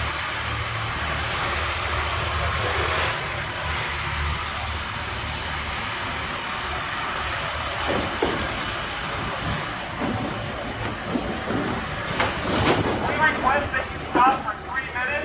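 Diesel engine of a semi-truck hauling a livestock trailer, running with a steady low drone as the rig moves past. Near the end, short clatters and voices come in over it.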